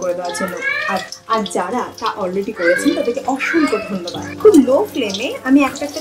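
Batter-coated bhetki fish fillet sizzling in hot oil in a steel kadai, with a voice talking over it throughout.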